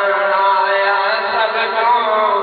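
A man chanting devotional verse in long, held notes over a steady low drone.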